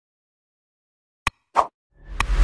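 Digital silence, then a sharp click about a second and a quarter in and a short pop a moment later: the button-press sound effects of an animated like-and-subscribe outro.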